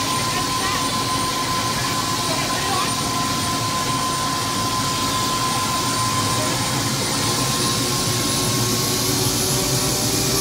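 Helicopter engine and rotor noise heard from inside the cabin, a steady loud rush with a constant whine running through it and a lower tone that rises slightly near the end.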